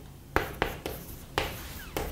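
Chalk writing on a chalkboard: a series of short, sharp chalk strokes and taps, about five across two seconds, with light scratching between them.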